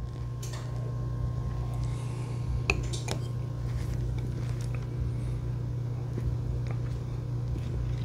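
Steady low room hum with a few small clicks, the clearest about three seconds in as a stemmed glass is set down on a coaster on a wooden table.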